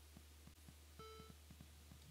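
Near silence with a few faint low ticks. About a second in comes a single short, faint beep: a classic Macintosh alert sound, going with an 'Illegal Instruction' error alert.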